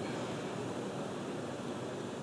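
A steady, even hiss of background noise on the broadcast audio, with no distinct events.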